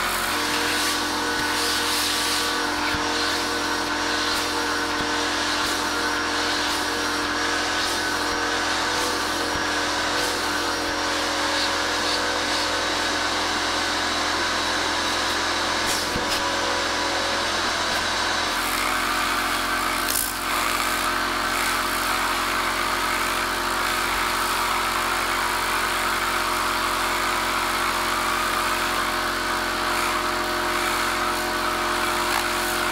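Tornador air cleaning tool blasting compressed air into a looped-fabric car floor mat, a loud steady hiss over a steady machine hum. The hum's pitch shifts about eighteen seconds in.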